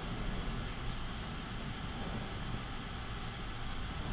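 Steady low background hum, with faint scratches of a felt-tip marker drawing short strokes on paper.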